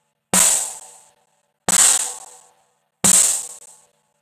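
Drum-kit playback from a DAW mix: a cymbal-heavy hit with a pitched low note under it, struck three times about 1.4 seconds apart, each ringing out and dying away before the next.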